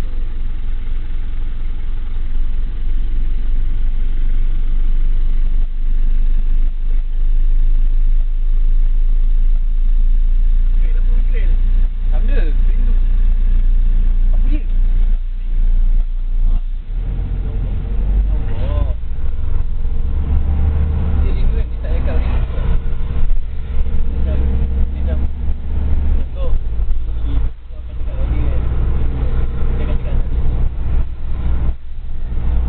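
Vehicle engine and road noise heard from inside the cabin: the engine idles while stopped at a light, then grows louder as the vehicle accelerates away a little past the halfway point.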